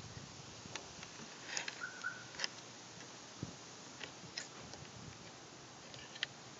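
Faint, scattered small clicks and light handling noises of the metal and plastic parts of a convertible top's front lock mechanism being slid into place by hand, with a brief faint chirp-like tone about two seconds in.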